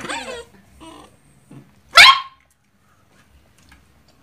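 A dog barks once, short and loud, about two seconds in.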